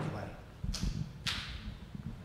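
Two brief swishing rustles of microphone handling noise, about half a second apart, as a handheld microphone is passed from one hand to another.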